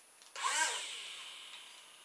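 Small electric motor with a plastic propeller starting to whir. The whine comes in suddenly about a third of a second in, bends in pitch as it spins up, then dies away gradually.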